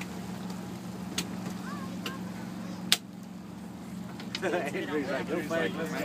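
Pontoon boat's engine running steadily underway, a constant hum, with a sharp tap about three seconds in and faint voices near the end.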